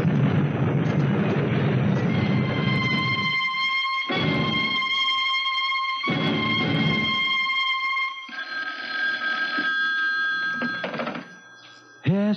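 Radio-drama scene transition: a car-crash sound effect, a loud noisy rumble for about the first three seconds, gives way to a held music sting chord. A telephone bell rings twice, about two seconds apart, over the music, which then shifts to another chord and fades out near the end.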